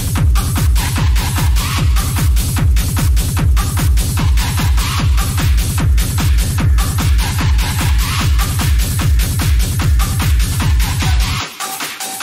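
Techno played in a DJ set: a steady, driving kick drum and bass with high percussion and synth layers above. About eleven seconds in, the kick and bass drop out, leaving only the higher layers.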